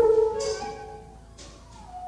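Twelve-tone chamber music for flute, English horn, horn, cello and percussion: sustained wind and string tones that sag slightly in pitch, loud at first and dying away, with a few light percussion strokes.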